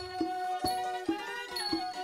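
Cambodian (Khmer) traditional wedding ensemble playing: bowed two-string fiddles carry a sustained melody that glides up and back down about a second in, over zithers, a hand drum and small cymbals striking a steady beat a little over twice a second.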